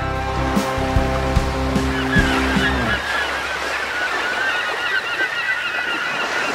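Guitar music ending about halfway through, overlapped by a flock of birds calling, many short calls at once, continuing steadily over a wash of water noise.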